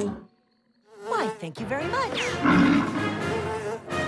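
A cartoon bear growling and grunting, with quick rising sound effects, after a brief silence near the start.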